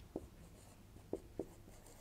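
Marker pen writing on a whiteboard: three faint, short taps of the tip against the board over a quiet room background.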